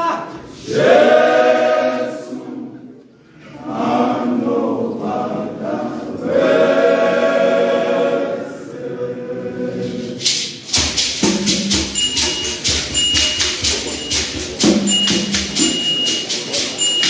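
Men's choir singing held chords in harmony. About eleven seconds in, a hand shaker starts a quick, steady beat under the singing.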